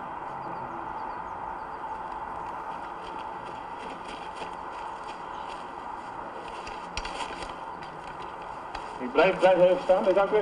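Steady background noise with a faint steady hum, from a film soundtrack playing through a lecture hall's speakers, with a few faint knocks in the middle. A voice begins speaking about nine seconds in.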